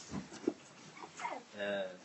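A person's voice making short sounds that glide in pitch, then one held pitched sound near the end.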